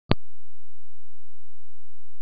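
A sharp click at the very start, then a steady low drone that holds unchanged: the bed of the background music, before its melody comes in.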